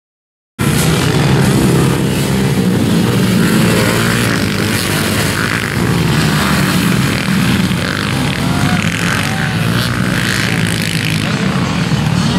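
Several motocross bikes' engines running hard together on the track. The sound cuts out completely for about a second at the very start.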